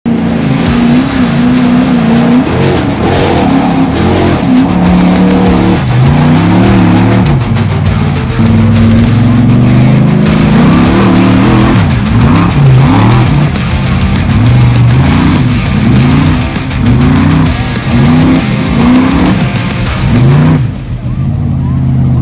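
The big engine of a lifted 1976 GMC square-body mud truck revving hard under load in deep mud, its pitch rising and falling again and again.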